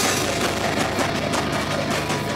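Live band playing loudly: drum kit and guitars in a dense, continuous wall of sound with a steady pulse of drum strokes.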